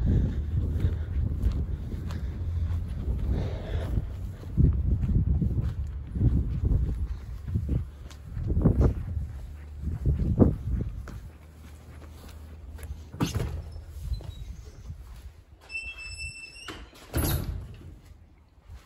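Wind rumbling on the phone's microphone over footsteps on grass and concrete, then, near the end, a door squeaking for about a second and shutting with a thump.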